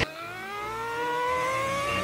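Cartoon pony's long angry growl through gritted teeth, one unbroken note rising steadily in pitch.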